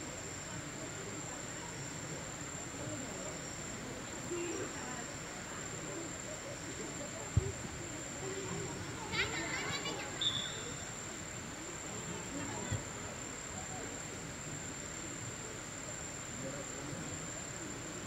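Insects giving a steady high-pitched drone at one unchanging pitch, with faint distant voices under it, a single thump a little past seven seconds and a brief call around nine to ten seconds.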